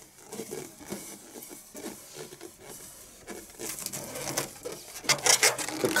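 Plastic ruler rubbing and scraping across the taut surface of an inflated latex balloon, an irregular rubbing that grows louder and brighter in the last couple of seconds.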